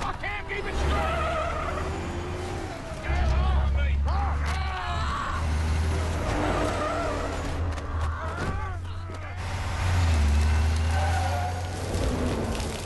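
Heavy semi-truck engine rumbling low as the truck drives, swelling louder twice. Over it come wordless cries and grunts.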